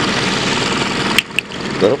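Toyota Camry engine idling with the hood open, a steady running noise close to the microphone, broken by two sharp clicks a little past a second in.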